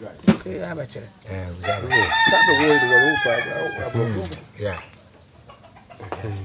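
A rooster crowing once: one long call starting about two seconds in, lasting about a second and a half and dropping a little in pitch at the end, with people talking underneath.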